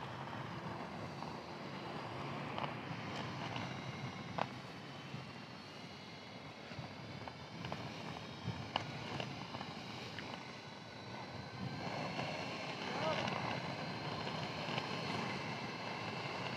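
Electric inline skates rolling on asphalt: a steady rumble from the wheels with a faint high whine from the electric motors, a little stronger near the end, plus wind on the microphone and a few small clicks.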